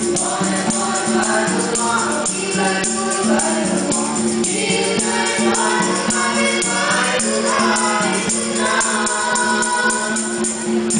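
A nasyid vocal group singing together in harmony, with a steady beat of light hand percussion.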